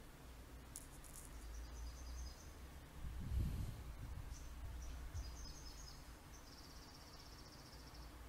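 Faint background: a steady low hum with faint high-pitched chirping, twice, and a soft low thump about three and a half seconds in.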